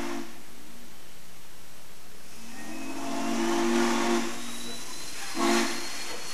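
Steam locomotive whistle sounding a chord of several low tones: a long blast from about two seconds in to five seconds, and a short toot near the end, over a steady hiss of steam. A blast is just ending as the sound begins.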